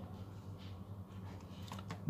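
A few soft clicks of keys being pressed on a Casio scientific calculator's keypad, over a low steady hum.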